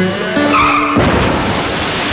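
Music with sustained notes, then a brief tire squeal and, about halfway through, a car crash: a loud burst of crunching noise that carries on and drowns out the music.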